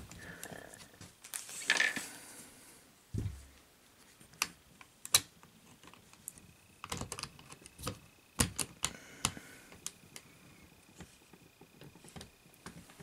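Scattered sharp clicks and light knocks of a plastic and diecast toy robot's leg parts being worked by hand and with a screwdriver to tighten a loose knee pin, with one dull thump about three seconds in.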